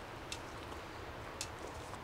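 Quiet outdoor background with two or three faint ticks and rustles of a person moving about on dry leaf litter.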